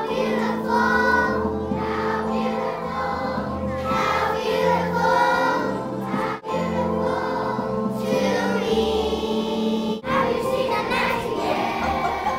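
A choir of young children singing a song over sustained instrumental accompaniment.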